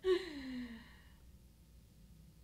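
A woman's laugh trailing off into a sigh: one falling voiced note that fades out about a second in.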